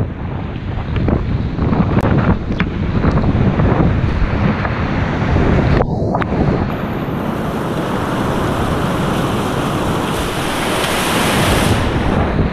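Whitewater rapids rushing and splashing around a kayak, with spray and wind buffeting an action camera's microphone. The sound is briefly muffled about six seconds in, then turns brighter and fuller as the boat runs through heavy foam.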